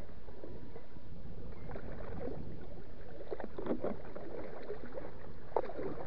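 Lake water splashing and lapping against a moving kayak on choppy water, with a few louder splashes, the sharpest near the end.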